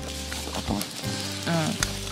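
Aluminium-tray nabeyaki udon sizzling on a tabletop gas stove, with background music underneath.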